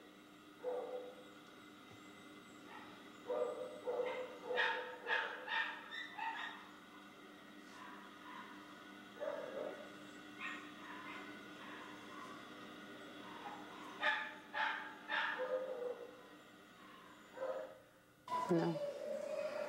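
Dogs barking intermittently, in short single barks and quick clusters of several, over a faint steady hum.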